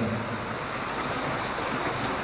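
Steady rushing background noise with no clear pattern, the room noise of a hall picked up between spoken phrases.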